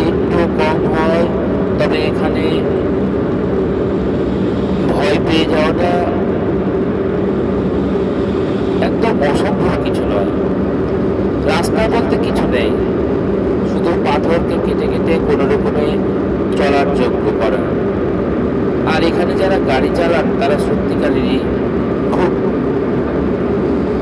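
Car engine and tyre noise heard from inside the cabin on a rough, unpaved road. It runs steadily throughout, with voices talking now and then over it.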